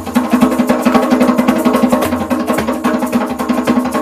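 Live band playing an instrumental passage: a loud, sustained reed-instrument melody held over fast djembe hand-drumming and guitar.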